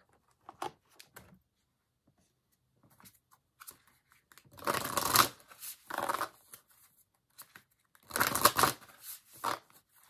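A deck of cards being shuffled by hand: faint light clicks at first, then several short rustling bursts in the second half.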